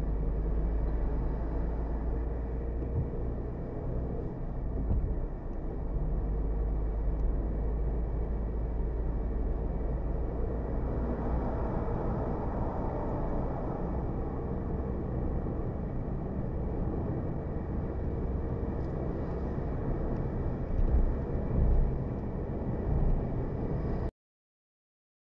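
Road and engine noise of a car driving on a highway, heard inside the cabin through a dashcam microphone: a steady low rumble that swells for a few seconds around the middle as a tanker lorry is passed close alongside.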